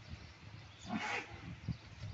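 A Holstein dairy cow gives one short, breathy snort about a second in, followed by a sharp click.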